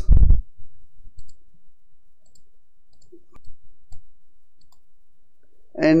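A few faint, scattered computer mouse clicks over low room noise, from picking the Address field in CorelDRAW's Print Merge toolbar and clicking Insert.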